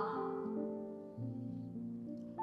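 Soft, slow background music of held instrumental notes, changing to new notes about a second in.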